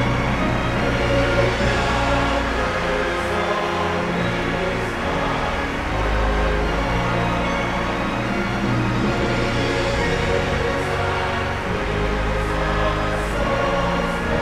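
Orchestra and choir performing, with long held chords over swelling deep bass notes.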